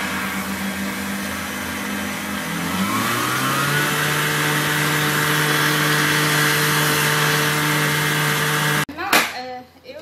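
Electric stand mixer with a wire whisk running steadily, its motor hum changing pitch about three seconds in as the speed changes. The mixer is switched off abruptly near the end, followed by a few knocks.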